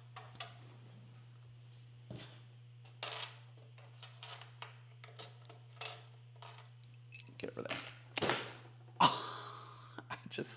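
Quilt fabric rustling as it is handled, with scattered small clicks over a steady low hum. Near the end, a foot hits the metal support under the sewing table: a loud knock, followed by a second, louder knock.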